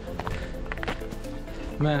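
Footsteps on a snowy trail and the heavy breathing of a hiker climbing uphill, with a few irregular crunches in the first second.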